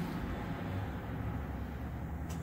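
A steady low background rumble with a faint hiss, without any distinct knocks or clicks.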